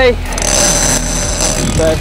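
Boat's outboard motors running with a steady low hum and a fast fine pulse, under wind and sea noise; a thin high whine comes in for about a second in the middle.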